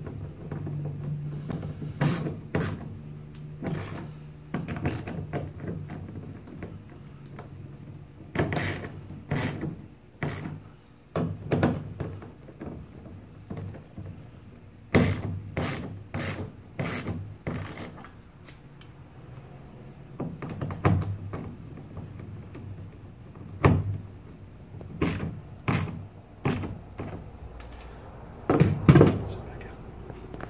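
Ratcheting hand screwdriver clicking in short bursts as it drives #8 stainless steel coarse-thread screws into a plastic kayak's accessory track rail. A low hum is heard in the first few seconds.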